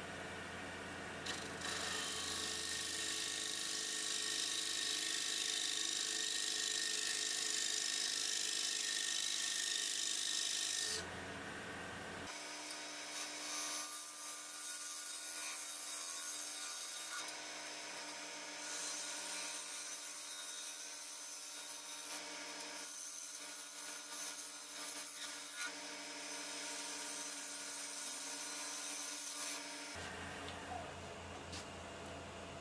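Wood lathe running while a turning tool cuts across the face of a spinning wooden bowl blank: one long cut of about ten seconds, a brief lull, then four shorter cuts, over the lathe's steady hum.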